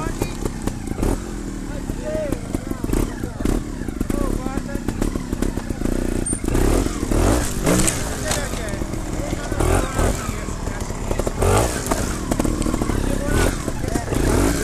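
Trials motorcycle engine running as the bike picks its way over rocks, with scattered knocks. Voices talk in the background throughout.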